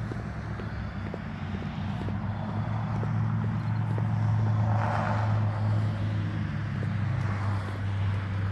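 Road traffic: a steady low engine hum, with a vehicle passing that swells and fades about five seconds in.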